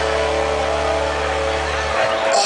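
Loud dance music over a sonidero sound system, held on a sustained low bass note and chord that cuts off suddenly at the end.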